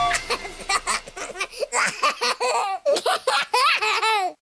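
A baby laughing in a run of short giggles.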